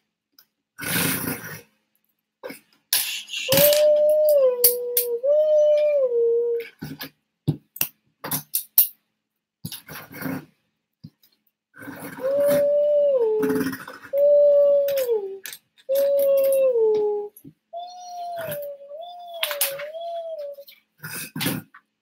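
A young child's voice imitating a two-tone fire siren: each call holds a high note and then drops to a lower one, two calls a few seconds in and three more past the middle, then a wavering call near the end. Plastic LEGO bricks click and clatter between the calls.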